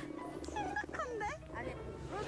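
A woman's voice exclaiming in Korean, with background music under it.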